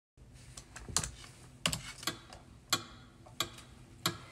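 Irregular sharp clicks and taps, about eight of them, from a computer mouse and a hand working it on the desk.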